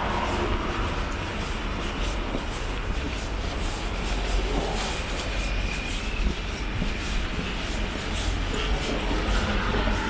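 Steady low rumble of passing vehicles, with a faint high-pitched squeal about five seconds in.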